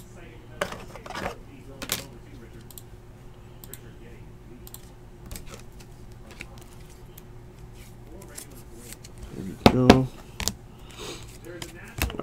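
Light clicks and taps of a trading card and its packaging being handled over a table, most of them in the first two seconds, over a faint steady hum. A short voice sound breaks in near the end.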